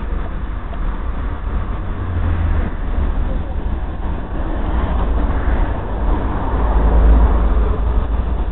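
Street traffic noise: a steady low rumble that swells to its loudest about five to seven seconds in.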